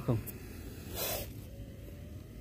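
A cobra caught in a wire-mesh snake trap gives one short, breathy hiss about a second in.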